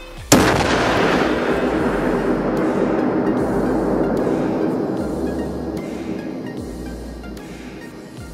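An explosive charge placed beside a car's front wheel detonating: one sharp blast about a third of a second in, then a long rumbling decay that fades over several seconds. Background music runs underneath.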